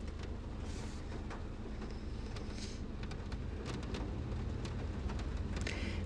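Faint steady background hiss and low hum, with a few faint scattered clicks.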